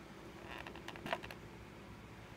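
Fingers handling a plastic cup-noodle container: a soft rustle, then a few light clicks and taps bunched about a second in.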